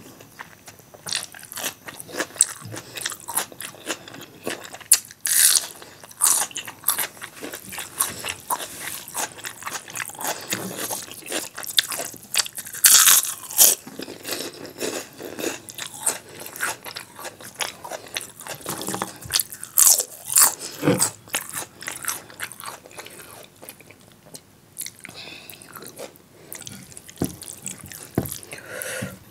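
Close-miked chewing of a mouthful of rice, dal and masala baingan: a constant run of sharp, crunchy and wet mouth clicks, quieter for a few seconds near the end, with fingers mixing rice and dal on the plate.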